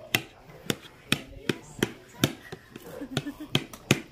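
Kitchen knife chopping vegetables, a sharp knock against the surface beneath with each stroke, about two or three strokes a second. Faint voices talk softly in the middle.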